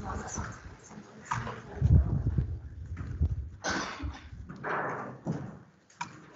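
Handling noise close to a microphone: a cluster of low thumps and knocks about two seconds in, then two short bursts of rustling near the end.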